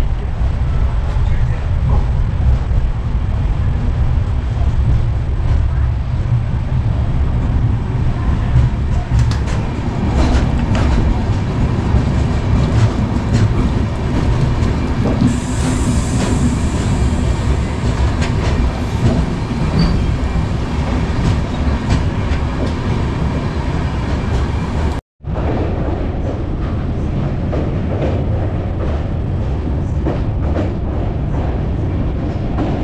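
Indian Railways express train running: a steady rumble of coach wheels on the track heard from inside a sleeper coach, with repeated clicks as the wheels pass over rail joints. About 25 s in the sound cuts out for an instant and resumes with the same rumble.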